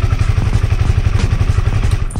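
Honda CB150R's single-cylinder four-stroke engine idling steadily with an even pulse. It is running on 100% cooking oil used in place of engine oil.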